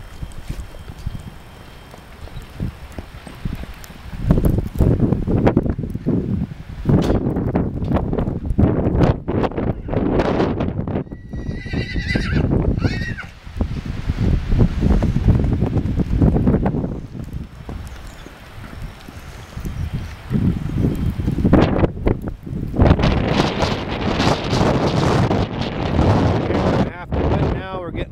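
Black Morgan stallion calling once with a short whinny about twelve seconds in, and hoofbeats on wet dirt as he moves and runs, under repeated loud low rumbling.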